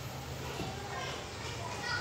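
A low pause in the talk filled with faint background voices, like children at a distance.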